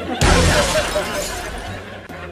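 A sudden crashing, shattering sound effect a moment in, fading away over the next two seconds.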